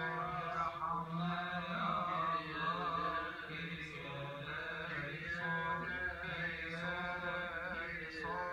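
Coptic Orthodox Good Friday liturgical chant, sung in long wavering held notes without a break, heard through a television's speaker.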